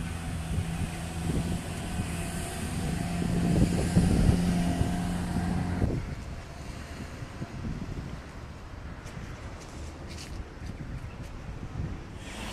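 A steady low motor hum with wind on the microphone, cutting off suddenly about halfway through to quieter outdoor background noise with a few faint clicks.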